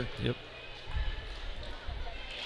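Basketball dribbled on a hardwood gym floor by a player at the free-throw line before his shot: a few short low thuds.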